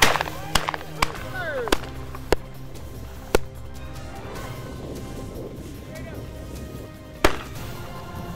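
Shotgun shots from a group of pheasant hunters, about seven in all: six in quick succession over the first three and a half seconds and one more near the end. Music plays underneath.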